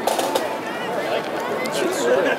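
Onlookers' voices talking outdoors, with a few brief clicks.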